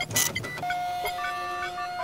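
Electronic beeps and held tones at several different pitches, switching on and off and overlapping, with a brief burst of hiss just after the start.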